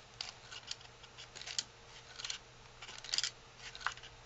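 Folded origami paper crinkling and rustling in short, irregular crisp bursts as a paper pop-up roll-up is flattened and let spring back open by hand. The loudest rustle comes a little after three seconds in.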